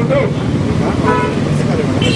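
A man speaking into a handheld microphone over a steady background rumble.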